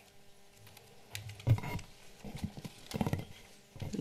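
Microphone handling noise: a string of irregular knocks and rubs as the handheld and lectern gooseneck microphones are handled and adjusted, loudest about one and a half seconds in.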